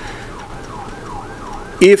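Faint emergency-vehicle siren in the background, its pitch rising and falling quickly several times a second.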